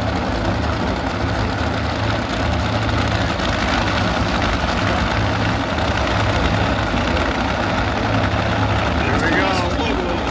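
Nitromethane-burning supercharged V8 Funny Car engines idling in a loud, steady rumble after their burnouts, with a voice near the end.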